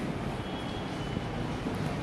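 Steady low rumble of background noise with no clear events.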